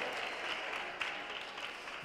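Audience applause, slowly dying away.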